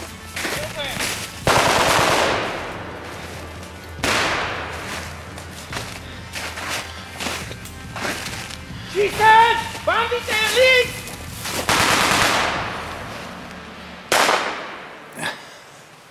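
Gunfire from blank-firing rifles in a forest firefight: several loud single shots, each trailing a long echo, and smaller cracks in between. Loud shouting comes in the middle.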